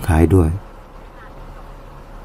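A man speaking Thai stops about half a second in, leaving a low, steady hum of a car rolling slowly, heard from inside the cabin.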